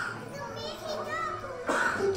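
Young children's voices talking softly and indistinctly, with faint music behind; a louder voice starts near the end.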